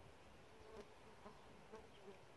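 Faint buzz of a flying insect amid near silence.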